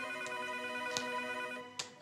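Electronic desk phone ringing with a fast trill over sustained background music. The ringing stops near the end with a click as the handset is picked up.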